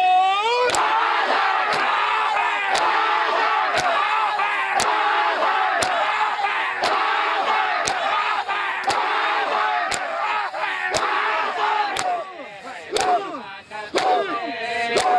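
Men's voices chanting and crying out together, with a sharp slap about once a second from hands struck in unison on bare chests (matam). A held sung note ends in the first second, and the voices thin out briefly near the end.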